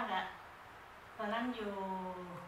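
Only speech: a woman talking into a handheld microphone, with a pause of about a second in the middle.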